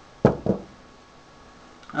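Two short knocks about a quarter second apart: a glass beer bottle being set down on a table.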